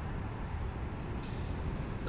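Faint, steady low rumble and hiss of background noise in a pause between speech, with a brief soft hiss a little after a second in.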